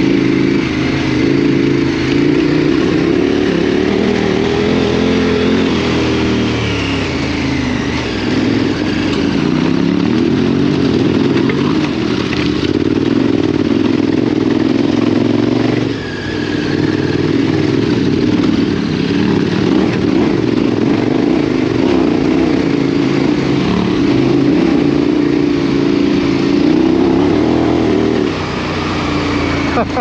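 KTM 1290 Super Adventure R's V-twin engine, fitted with a Wings aftermarket exhaust, pulling up a rough, rocky track, its revs rising and falling as the throttle is worked. The engine note drops briefly about halfway through, then picks up again.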